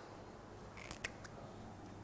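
A few faint, short clicks and a brief scratch about a second in, from a whiteboard marker being handled, over quiet room hum.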